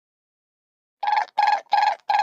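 Phone ringing: short, even beeps at one pitch, about three a second, starting about a second in.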